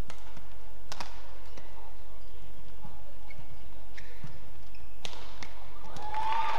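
Badminton racket strikes on a shuttlecock during a rally: sharp single cracks at the start, about a second in, and twice a little after five seconds. There are a couple of short, faint high squeaks in between.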